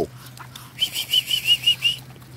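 A bird giving a quick run of short, high chirps, about seven a second, starting a little before the middle and lasting just over a second.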